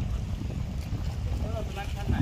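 Wind buffeting the microphone, a low unsteady rumble, with voices coming in during the second half.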